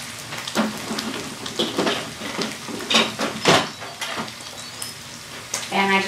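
Bacon fat sizzling steadily in a hot stainless skillet, with a series of clatters and knocks as the Instant Pot's lid is set on and locked, the loudest about three and a half seconds in.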